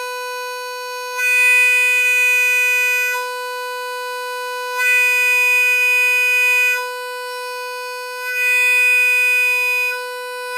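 Diatonic blues harmonica holding one steady note while the player's mouth shape switches back and forth between a darker 'ah' vowel and a brighter 'ee' vowel. The brighter 'ee' passages come three times, each about two seconds long, and are noticeably louder with more cut, with no extra breath force.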